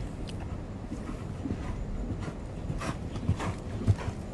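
Horse cantering on a sand arena: a few soft, muffled hoofbeats over a low, steady rumble.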